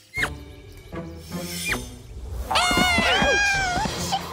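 Cartoon characters letting out a long wavering high-pitched cry about two and a half seconds in, as they tumble through a magic portal, over background music with short swooping sound effects before it.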